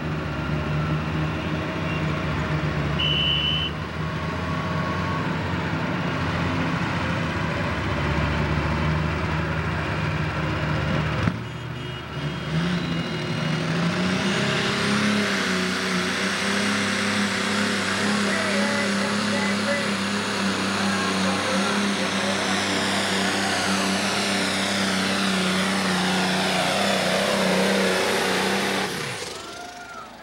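Pro Stock pulling tractor's turbocharged diesel engine running steadily at first. About eleven seconds in it throttles up with a rising turbo whine and holds at full throttle for a long stretch. Near the end the throttle comes off and the turbo whine winds down.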